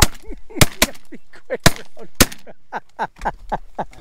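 A volley of shotgun shots from several hunters, about five sharp blasts in the first two and a half seconds, fired at ducks coming in over the decoys.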